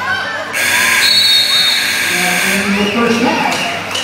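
Gym scoreboard buzzer sounding for about two seconds to end the half, starting about half a second in, followed by crowd and player voices in the hall.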